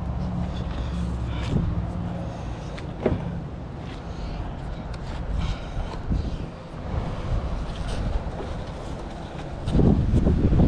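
Wind rumbling on the microphone while a blue rope is handled and tied around a wooden deck railing, with a couple of sharp knocks in the first few seconds.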